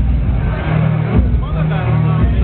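Detroit electro played loud through a club sound system: a heavy bass line in repeating blocks, with voices over it.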